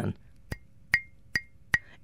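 A glass cup tapped four times, about two and a half taps a second, each tap giving a short, bright ring.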